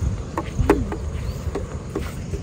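Footsteps on dry grass, with low rumble from wind and handling on the phone's microphone and a few light scuffs. A faint, steady high insect buzz sits behind them.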